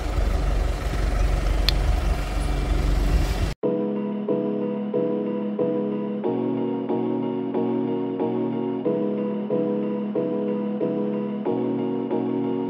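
Wind buffeting the phone's microphone outdoors for the first few seconds, then a sudden cut to background music: keyboard chords pulsing about twice a second.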